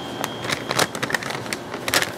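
A folded paper instruction sheet being opened out and handled, giving an irregular run of crisp crackles and rustles.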